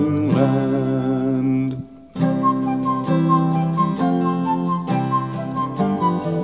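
Acoustic folk music. A held note with vibrato ends about two seconds in, and after a brief pause an instrumental passage begins: plucked strings with a high melody line.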